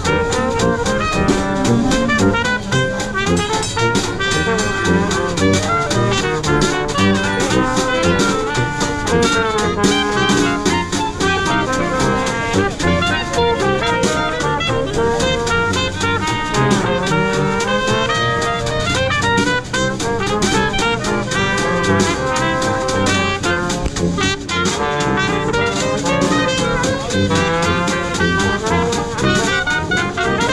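A live Dixieland band playing a lively tune: trumpet and other horns carry the melody over sousaphone and banjo, with a steady, even beat.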